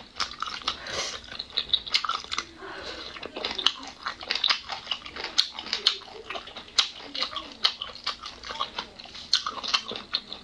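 Close-up eating sounds: a person chewing boneless chicken feet in red chili oil, with a steady run of short wet smacks and clicks from the mouth.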